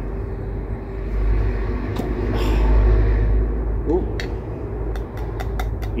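Glass jar's screw lid being twisted open by hand, with a sharp click about two seconds in followed by a brief hiss, and a run of small clicks near the end as the lid comes free. A steady low rumble runs underneath and swells in the middle.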